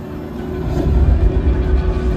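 Deep low rumble swelling up over the arena's PA speakers, part of the opening video's soundtrack, with faint music underneath.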